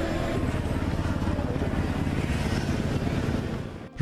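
A motor vehicle engine running steadily close by, a low pulsing rumble under outdoor street noise, cutting off abruptly just before the end.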